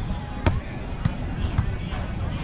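A hand striking a beach volleyball: one sharp slap about half a second in, followed by two fainter knocks, over outdoor crowd chatter and wind.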